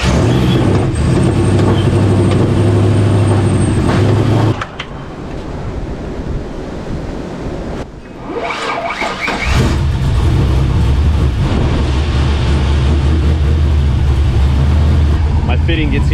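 Chevy 5.3 L LS V8 idling steadily. The engine sound drops away about four and a half seconds in and comes back, idling evenly again, about nine and a half seconds in.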